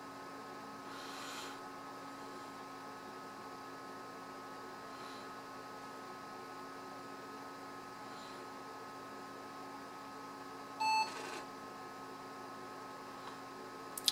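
Computer's PC-speaker POST beep: one short, high beep near the end, over the steady hum of the running machine. A single short beep at boot is typical of a passed power-on self-test.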